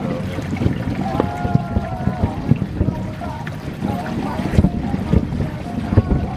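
Distant fireworks from several displays going off, a run of irregular muffled booms and pops, a few louder ones near the end.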